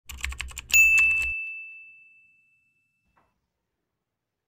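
Intro sound effect: a quick run of typing-like clicks, then a single bright ding that rings out and fades away over about a second and a half.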